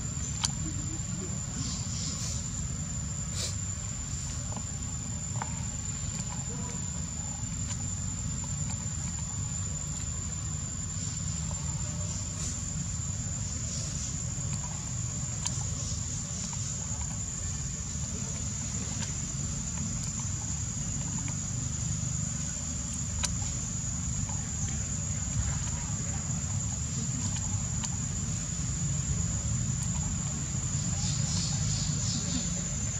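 A steady high-pitched insect drone, a little louder from about ten seconds in, over a constant low rumble, with a few faint clicks.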